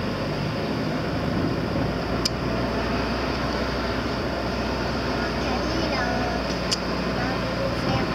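Steady in-cabin noise of a car driving slowly, its engine and tyres running evenly, with two brief clicks about two and seven seconds in.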